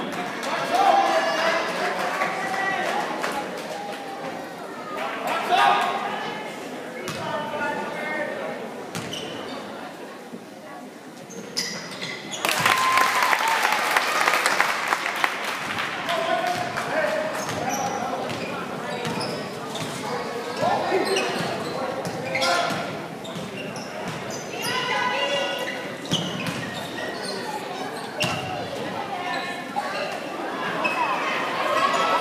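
Basketball dribbling and bouncing on a hardwood gym floor during play, amid shouting players and spectators in an echoing gymnasium, with a loud burst of crowd noise about twelve seconds in.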